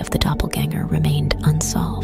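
A narrator speaking over background music with steady held tones.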